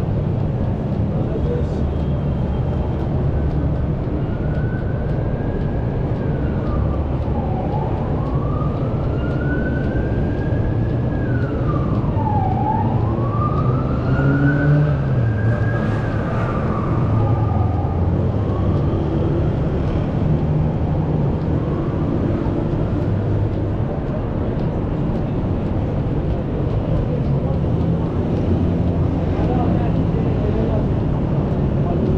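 Steady city traffic, with an emergency vehicle's siren wailing slowly up and down. It starts a few seconds in, makes about three rise-and-fall cycles, and fades away past the middle.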